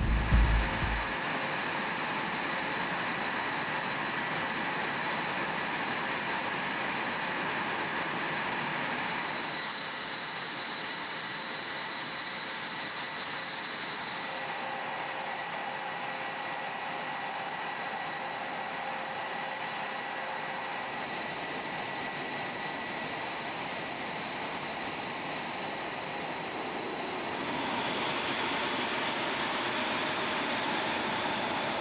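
EA-18G Growler's jet engines idling on the ramp: a steady turbine whine of several high tones over a rushing noise. The mix of tones shifts slightly about a third of the way in and again near the end.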